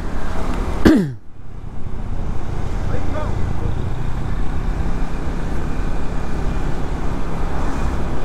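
Steady wind rush on the microphone and road and engine noise from a motor scooter being ridden fast, with a short, sharp falling sound about a second in.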